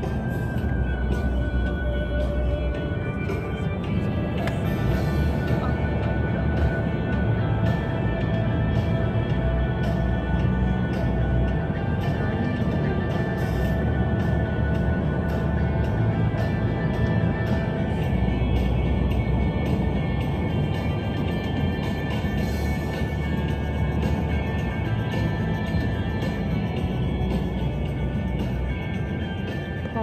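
Music playing on the car's satellite radio over the steady low rumble of road noise inside the moving car's cabin.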